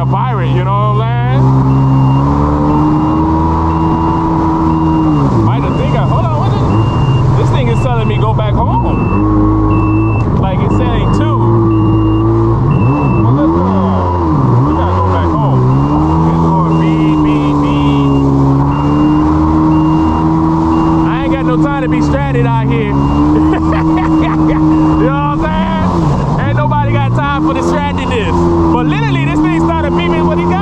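Jet ski engine running hard over the sea, its pitch repeatedly dropping and climbing again as the throttle is eased and opened over the waves, with wind and water rush.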